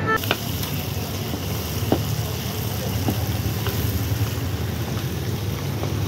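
Meat frying in hot oil in a karahi wok: a steady sizzle, with a few sharp clinks of metal utensils against the pan.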